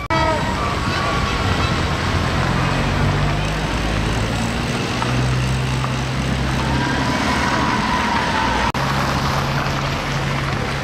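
Slow-moving trucks and street traffic, with a steady low engine hum under general road noise. Voices and shouts from the crowd are mixed in.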